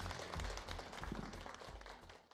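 Faint room noise of a meeting breaking up: many small taps and clatter of people and chairs moving, with a low murmur of voices, fading out.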